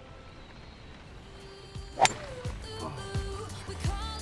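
A golf club strikes the ball once with a sharp crack about halfway through. Music comes in after the hit.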